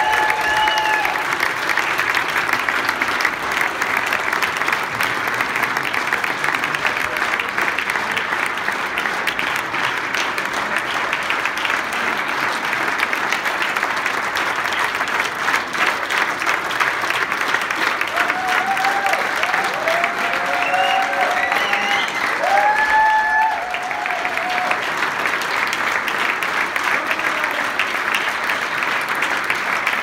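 Audience applauding: dense, steady clapping from a full hall. A few voices call out above it near the start and again about two-thirds of the way through.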